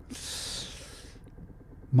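A person's breath close to the microphone, a soft hiss lasting about a second.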